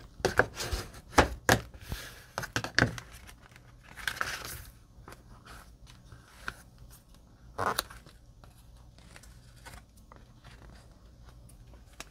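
Cardstock booklet pages being folded and pressed flat by hand: crisp paper rustles and taps, busiest in the first three seconds, with another rustle about four seconds in and a sharp crackle near eight seconds.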